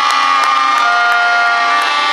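Audience clapping at an outdoor ceremony, with several long held notes from wind instruments sounding over it. A lower held note joins a little before a second in.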